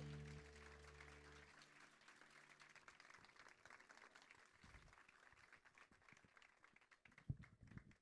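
The last held notes of a live band die away about a second and a half in, followed by faint, thinning applause from an audience. There is a soft knock near the end.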